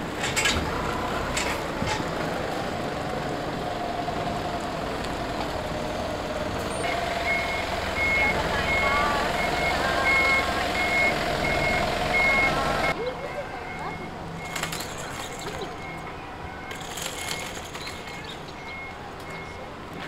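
A bus engine running as the bus manoeuvres. From about a third of the way in, its reversing alarm sounds a steady train of evenly spaced high beeps. After a sudden drop in level about two-thirds through, the engine fades and the beeping carries on more faintly.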